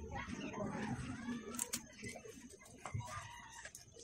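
A rooster crows once over the first second and a half. Sharp clicks come from plastic model-kit parts being handled and pressed together.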